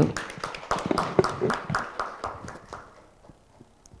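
Scattered applause from a small audience, the claps thinning out and dying away about three seconds in.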